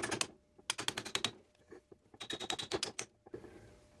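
Light hammer taps on the steel spider-gear cross shaft, driving it into a Dana 44 differential carrier in three quick runs of rapid taps. It goes in nice and easy.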